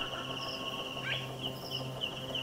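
Cricket-like insect chirping, a steady pulsing trill, over a low steady hum, with a brief rising call about a second in.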